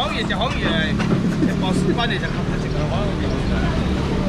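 A steady low motor hum, with a burst of voices and laughter in the first second and scattered faint talk after it.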